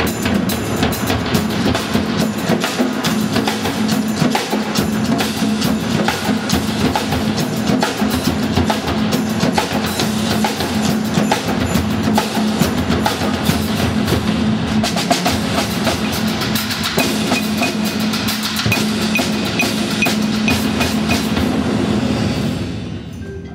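A drumband's percussion ensemble playing a dense, continuous passage on snare and tenor drums, cymbals and mallet percussion, with a repeated high mallet note in the last few seconds.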